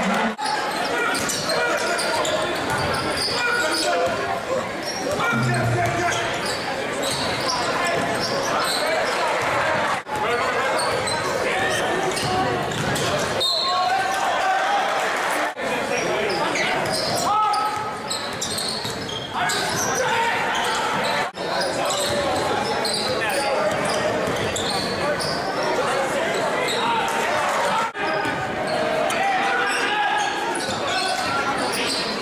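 Basketball game sound in a gym: crowd chatter and voices echoing in the hall, with the ball bouncing on the hardwood court. The sound dips out briefly every few seconds where clips are cut together.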